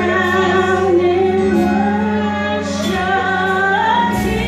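A woman singing a slow worship song into a microphone, holding long notes that glide between pitches over sustained low accompanying notes.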